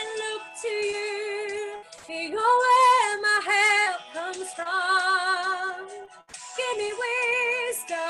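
A woman singing solo, holding long notes with a wide vibrato, in phrases broken by brief pauses for breath about every two seconds.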